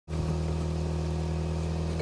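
A vehicle engine idling nearby, a steady low hum that does not change.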